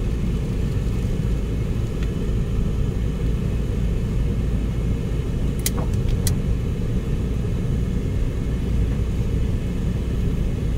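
Steady low rumble of a car driving along a road, engine and tyre noise heard from inside the cabin. Two short clicks a little past halfway.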